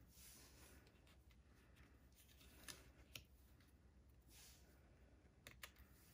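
Near silence, with faint rustling of paper and card stock being handled and a few light clicks, two of them close together near the end.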